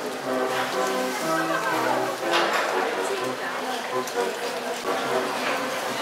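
Brass band playing a tune in held notes, with people's voices over it.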